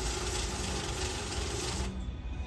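Electric banknote counting machine running, feeding a stack of bills through with a steady rustle; it stops just before the end.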